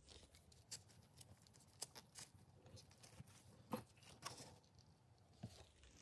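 Near silence with a few faint, scattered clicks and rustles of nitrile-gloved hands handling a steel brake caliper piston while coating it with brake fluid.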